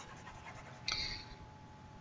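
A single short breath close to the microphone about a second in, over faint hiss and a faint steady hum.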